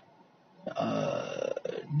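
A man's rough, croaky throat sound lasting about a second, running straight into his next words.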